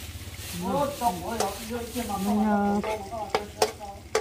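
Metal spoon stirring and scraping chili seasoning paste as it sizzles in an electric wok, with a few sharp taps of the spoon on the pan in the last second.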